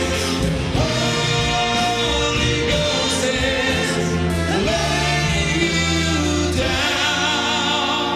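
Male vocalists singing into microphones, accompanied by a fanfare band of brass and percussion. A long held note with vibrato comes near the end.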